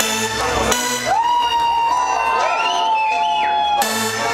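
Electronic future-pop/EBM band playing live: the pulsing beat drops out under a long synth note that slides up about a second in and is held, with the beat coming back just before the end.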